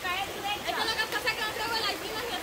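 Several voices talking and calling out in the background, not close to the microphone, over the steady rush of a small stream.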